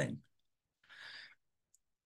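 A short, faint breath taken in by the narrator about a second in, with the last syllable of a spoken word trailing off just before and silence otherwise.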